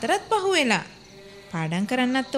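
A voice holding long notes that slide downward in pitch, with a short pause about a second in before it starts again.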